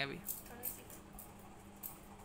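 Faint soft rubbing and a few small clicks of a ball of modelling clay being rolled between a child's palms.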